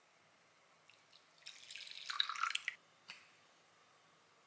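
Espresso poured from a small glass shot pitcher into a glass bowl: a short trickle and splash lasting about a second, starting about a second and a half in, followed by a single light tick.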